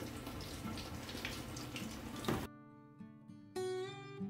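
A steady hiss of kitchen noise, then about two and a half seconds in the sound cuts abruptly to background music with plucked guitar.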